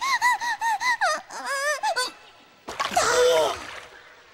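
A young child's high-pitched crying wail, broken into quick rising-and-falling sobs for about a second, then a few more short cries. About three seconds in comes a second-long burst of splashing noise with a cry in it.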